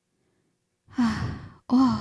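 A woman's audible sigh about a second in, a breathy exhalation lasting about half a second after near silence; her speech starts just before the end.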